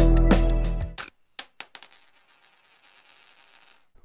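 Synth-rock background music that stops abruptly about a second in. A bright, high metallic chime follows, struck several times in quick succession and ringing out over the next few seconds.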